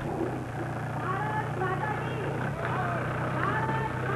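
Jeep engine idling with a steady low hum, with people's voices talking over it.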